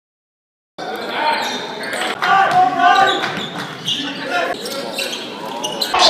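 A basketball bouncing on a hardwood gym court during live play, with voices of players and spectators in the hall. The sound cuts in suddenly about a second in, after silence.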